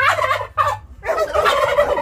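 Domestic tom turkey gobbling.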